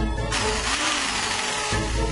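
Cartoon power-drill sound effect: a noisy drilling buzz, boring a hole into a wooden tabletop. It starts just after the beginning and stops about a second and a half later, over background music.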